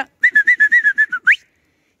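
A loud whistled call: a quick run of about nine short notes on one steady pitch, ending in a fast upward slide, then cut off.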